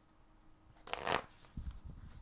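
An Animal Spirit Guides oracle deck being shuffled by hand. It is quiet at first, then there is a short rustle of cards about a second in, followed by a few soft low knocks.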